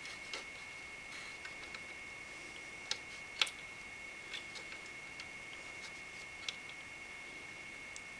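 Faint, scattered clicks and taps of fingers pressing small rubber washers onto the cooler backplate's screws on a motherboard, the sharpest about halfway through, over a steady high-pitched whine.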